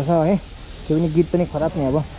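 A man's voice talking in short phrases, over a faint steady hiss.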